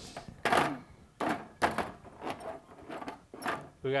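Toy wrestling figures being knocked about on a toy wrestling ring: a string of irregular knocks and thumps, about six in four seconds.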